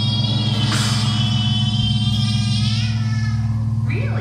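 Live psychedelic noise-rock music: a steady, pulsing low drone under high, wavering tones that bend in pitch, with no drums.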